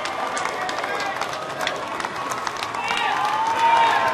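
Dense, rapid clicking of many press camera shutters, with crowd voices calling out over it, louder near the end.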